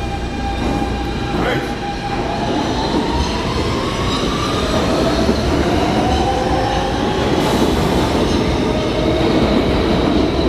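New York City subway E train pulling away through the tunnel. Its motor whine rises in pitch twice as it accelerates, over the steady rumble of the wheels on the rails.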